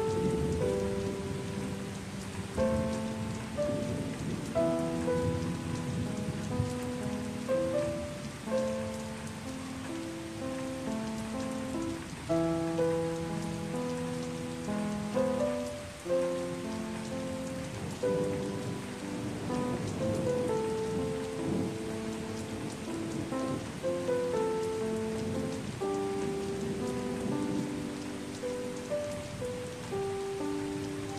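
Gentle piano melody, single notes and soft chords changing about every half second, over a steady hiss of rain.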